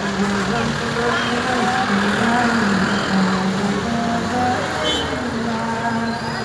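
A sung chant in long held notes that step up and down in pitch, over steady vehicle and street noise.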